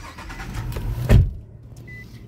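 Low, steady rumble of a car heard from inside the cabin, with one loud low thump about a second in.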